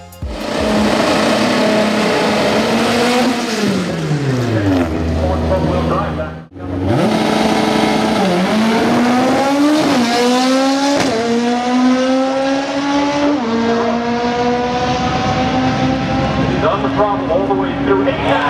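Naturally aspirated Honda four-cylinder of a drag-racing Civic running at high revs. It holds steady, then winds down; after a brief break the car launches and pulls up through the gears, the pitch climbing and dropping back at each of several upshifts.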